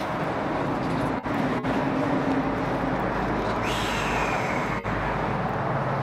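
Steady outdoor street ambience, a low traffic hum, with a short falling high whine about four seconds in.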